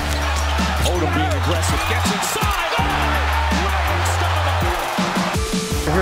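Background music with a heavy bass line in long held notes, laid over the noisy arena sound of a televised basketball game.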